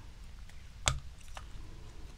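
Small metal hand-held hole punch being handled with a strip of craft foam: one sharp click about a second in, with a few faint ticks around it.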